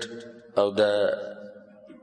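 A man's voice speaking in Pashto, with one word about half a second in whose vowel is drawn out into a long, chant-like held tone that fades away, followed by a brief pause.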